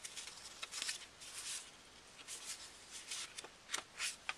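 A stack of paper journaling cards being handled and flipped, the cards sliding and rustling against each other in short repeated swishes, with a couple of sharper flicks near the end.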